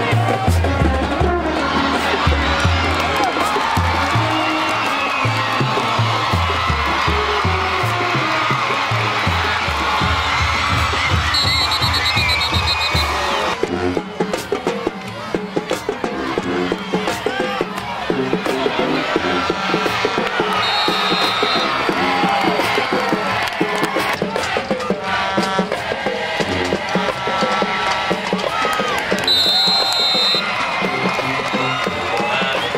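Marching band drums beating a steady rhythm over continuous crowd noise, the drumming stopping about halfway through; after that the crowd noise carries on with cheering, broken by a few short high whistle blasts.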